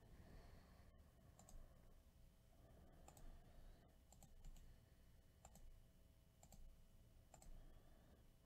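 Near silence with faint, scattered clicks of a computer mouse and keyboard, roughly one a second, a few coming in quick pairs.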